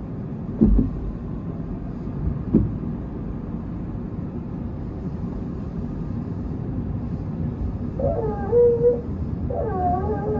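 Tobu 10050 series electric train running with a steady rumble, two knocks from the wheels early on. About eight seconds in, a wavering squeal of the wheels or brakes sets in.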